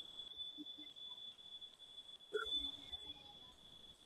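A pause with almost no sound: faint room tone with a thin, steady high-pitched whine running through it, and a brief faint sound a little over two seconds in.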